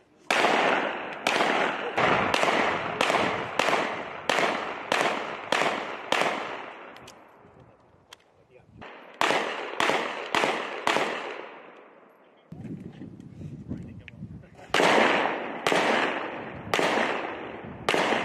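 Pistol shots from M18 (SIG Sauer P320) 9 mm service pistols, fired in quick strings, each crack followed by a short echo off the range. About a dozen shots come in the first seven seconds, roughly one every half second. After a brief pause a fast string of five follows, then a few more scattered shots near the end.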